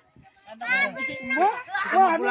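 Young children's voices calling out and chattering as they play in the water. The voices begin about half a second in, after a brief near-silent gap.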